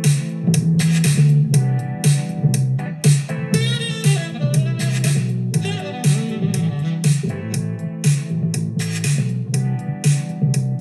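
A short music loop built from Splice samples playing back in Logic Pro: a steady beat over a deep bassline and a Rhodes electric-piano loop. A melodic line that wavers in pitch comes in about three and a half seconds in.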